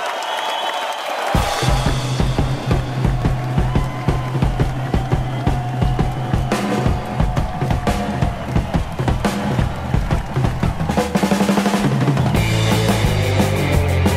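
Rock music with a driving drum beat and a heavy low line that come in about a second in. It gets fuller and louder near the end.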